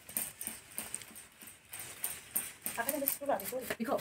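Rice grains poured from one bamboo winnowing tray onto another, a light crackling patter of grains landing on the woven bamboo. A voice is heard briefly near the end.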